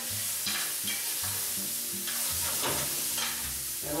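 Red pepper strips sizzling in a frying pan as a utensil stirs and scrapes them across the pan bottom. The peppers are sautéing and deglazing the browned sausage residue from the bottom of the pan.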